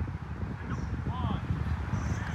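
A low rumble with faint, distant voices calling out on an outdoor field.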